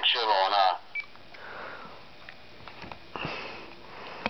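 A voice at the start, then about a second in a single short high beep from a Nextel i425 push-to-talk phone, followed by quiet room tone with a few faint handling clicks.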